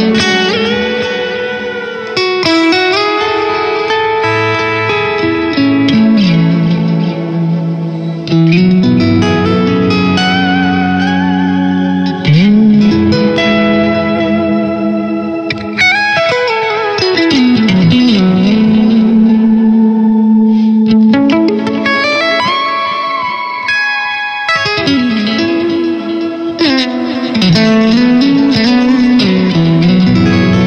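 Electric guitar played through a BOSS GT-1000 shimmer reverb patch: long sustained lead notes wash into a bright, shimmering reverb, with several smooth pitch swoops down and back up.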